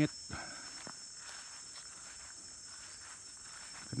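A few soft footsteps on grass near the start, over a steady high-pitched insect drone.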